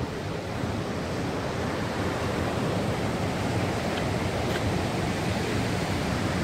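Ocean surf breaking along a stony beach: a steady rushing wash of waves with no distinct single breaks.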